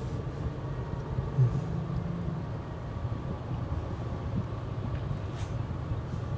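Steady low rumble of a car heard from inside its cabin: engine hum and road noise.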